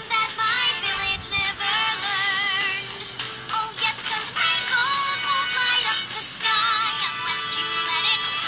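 A sped-up, high-pitched song, nightcore-style, with a female singing voice that wavers with vibrato over steady backing music.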